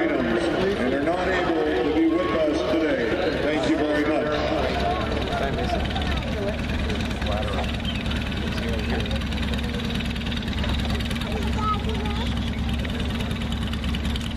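An echoing, indistinct voice over the stadium public-address system, above the murmur of a large crowd and a steady low rumble. The voice is strongest in the first few seconds and grows faint about five seconds in, leaving mostly the crowd and the rumble.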